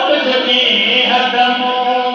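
A man's voice chanting a Sindhi naat through a microphone, holding long notes that bend slightly in pitch.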